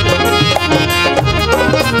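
Live Punjabi folk music from a stage band: a reedy keyboard melody over steady percussion, played loud between sung lines.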